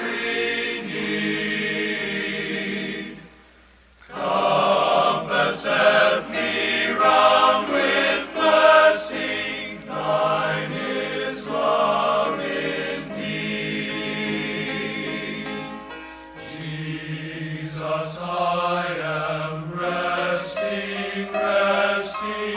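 Male choir singing a hymn, with a brief pause in the singing about four seconds in before it resumes.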